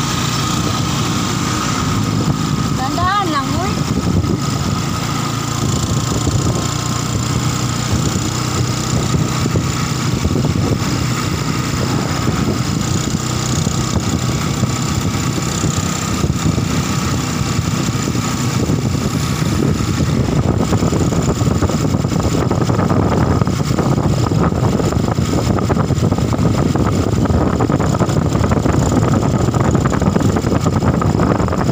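Vehicle engine running steadily, heard from on board while riding along a paved road, with road and wind noise. The sound grows rougher and noisier about two-thirds of the way through.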